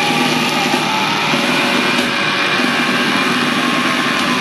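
Black metal band playing live: a loud, unbroken wall of distorted electric guitars and drums, with a few held guitar notes through it.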